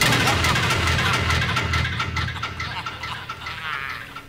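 Men laughing loudly over a loud stage music sound effect with rapid drum strokes and a deep low rumble. The effect fades away steadily through the few seconds.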